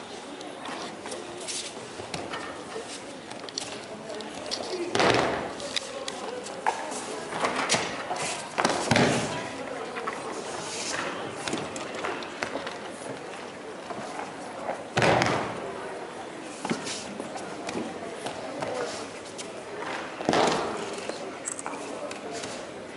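Aikido partner taking repeated breakfalls on tatami mats during throws: several body thumps on the mats, the loudest about five, nine, fifteen and twenty seconds in, with lighter steps and impacts between.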